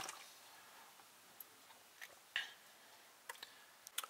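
A few faint, scattered clicks, about five, over a low steady hiss.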